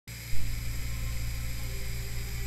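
Steady low electrical hum, with a brief louder jump just after it starts.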